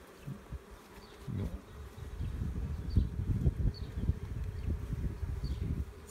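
Honey bees buzzing in and around an open hive, heard as a steady drone over a low, uneven rumble.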